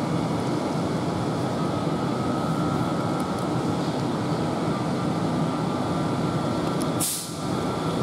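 Standing Class 450 electric multiple unit giving a steady hum and rush. A short burst of air hiss comes about seven seconds in.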